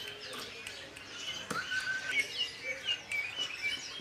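Caged songbirds chirping and calling: a scatter of short, high chirps and quick hooked notes, with one brief steady whistle about one and a half seconds in.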